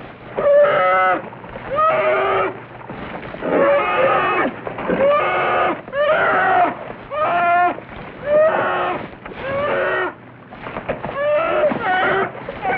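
Bear growling in a rapid series of short, pitched calls, about one a second, as it fights.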